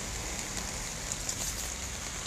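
Steady rain falling on a wet street, an even hiss with faint scattered patter.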